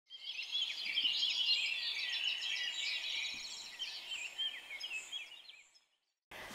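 Several songbirds chirping and singing at once, many quick overlapping chirps and trills, fading out near the end.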